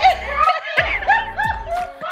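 A woman laughing hard, in several short high-pitched laughs.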